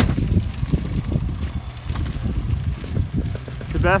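Small motorised steampunk vehicle driving off across dirt, a low, uneven rumble.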